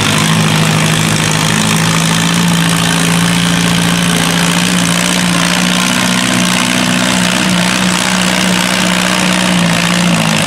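Farmall M tractor's four-cylinder engine running steadily under load as it pulls a weight sled, its note holding an even pitch throughout.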